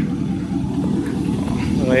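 Chevy Silverado's 4.8-litre V8 idling, a steady low rumble; a voice starts near the end.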